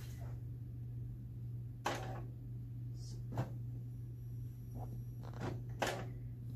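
A steady low hum with a few soft clicks and knocks scattered through it.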